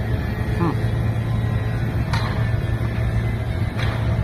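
Steady low drone of diesel engines from pipeline heavy equipment running.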